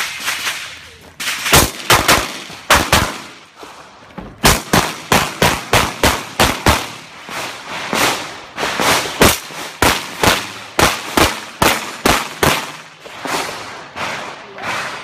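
Pistol shots in a USPSA stage run: a quick string of about six shots, a pause of about a second and a half while the shooter moves, then a long run of shots, many in fast pairs, until near the end.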